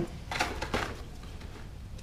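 Soft rustling with a few light clicks as banana peel is handled and laid onto a pile of fruit peels in a plastic worm bin, over a low steady hum.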